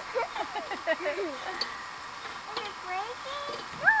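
Indistinct voices of several people talking in the background, ending in a loud shouted "No!".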